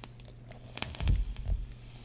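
Handling noise from small vape gear worked by hand close to the microphone: a few light clicks, then a cluster of low bumps in the second half, over a steady low electrical hum.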